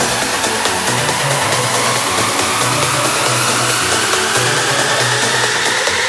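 Psytrance breakdown in a DJ mix: the kick drum drops out and a noise sweep rises steadily in pitch over a faint low held tone, a build-up leading into the next drop.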